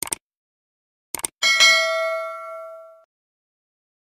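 Subscribe-button animation sound effect: two quick mouse clicks at the start, two more about a second in, then a notification bell ding that rings out and fades over about a second and a half.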